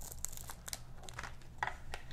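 A sticker being peeled off a plastic cable modem casing: a faint hissing peel at the start, then scattered small crackles and clicks of crinkling plastic and paper.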